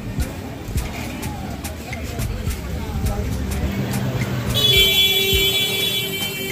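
Busy market street ambience: a low traffic rumble with voices and faint regular ticks. About four and a half seconds in, a steady high electronic tone like a horn or buzzer starts suddenly and carries on.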